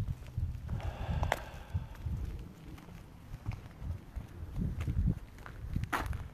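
Footsteps of a person walking over a driveway, with a hand-held phone's microphone picking up dull, uneven low thumps and handling rubs, plus a few sharp clicks.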